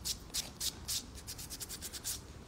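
Short scratchy rubbing strokes close to the phone's microphone, repeating about three or four times a second.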